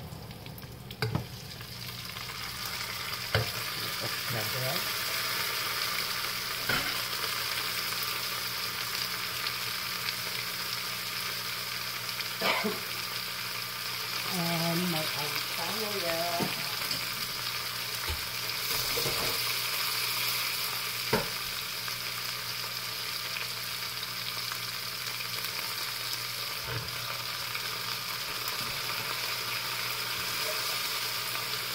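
Green beans and other vegetables sizzling in a hot pot over onion, garlic and chicharron, a steady frying hiss, with a few sharp knocks from stirring and adding vegetables.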